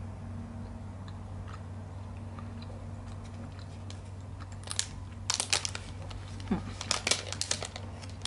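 Foil-lined protein bar wrapper crinkling in quick bursts in the second half, over a steady low hum. A short closed-mouth "hmm" comes near the end.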